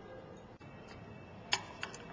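Two light clicks about a third of a second apart near the end, over faint room noise, from handling the burette and glassware while titrant is added.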